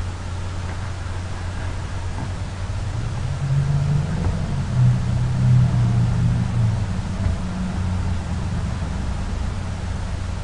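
Steady low hum and hiss of background noise. A deeper rumble swells in the middle and fades again.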